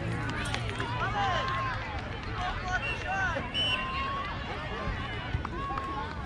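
Many overlapping voices of children and adults shouting and calling out, some high-pitched and some drawn out, with no single voice standing out.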